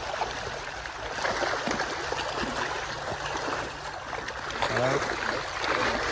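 Water churning and splashing continuously as a crowd of large tilapia thrash in a net hauled up tight in a fish cage, with a low steady hum underneath for the first few seconds.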